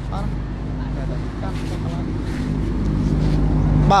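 A motor vehicle engine running steadily close by, its hum growing louder over the last second or so, with faint voices in the background.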